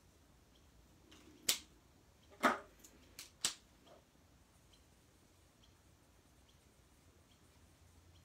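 A handful of short, sharp plastic clicks and taps over about two seconds as an alcohol marker is set down on the desk and another is picked up.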